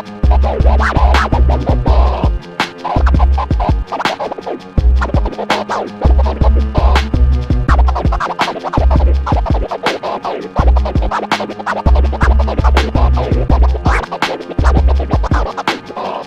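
Record scratching on a turntable over a hip-hop beat: rapid back-and-forth scratch strokes over repeated heavy deep-bass hits.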